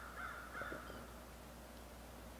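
A crow cawing, about three caws run close together in the first second.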